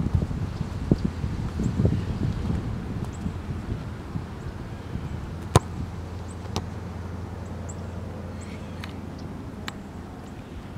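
Soccer ball dribbled on grass: soft touches and footsteps in the first few seconds, then one sharp strike of the ball about five and a half seconds in. A low wind rumble sits under it.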